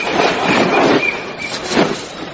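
A vehicle running with a dense rumble and a thin, high steady squeal through the first second and a half: a vehicle sound effect in the audio drama.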